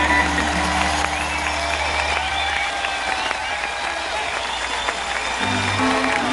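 Live reggae band holding a chord with a sustained bass note, which stops about two and a half seconds in, leaving audience applause and cheering; near the end a few bass notes come back in.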